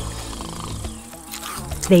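Flies buzzing steadily.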